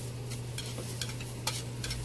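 Eating noodles with chopsticks and a spoon from a plate and a metal bowl: a few sharp clicks of utensils and eating noises over a steady low hum.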